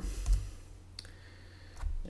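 Computer keyboard key presses: a soft knock at the start, one sharp click about a second in, and another low knock near the end.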